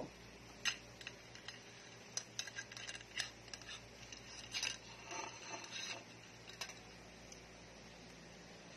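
Light metal clinks and rattles of a collapsible wire frying basket and metal tongs against a plate, in scattered irregular taps with a few short clusters.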